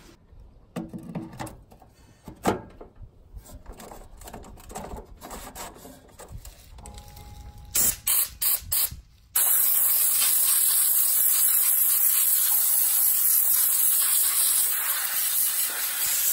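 Hand-held spray nozzle blasting into a tractor radiator's core to clean it out. After some quiet handling knocks, it gives four short bursts about eight seconds in, then a loud, steady, hissing spray from about nine seconds on.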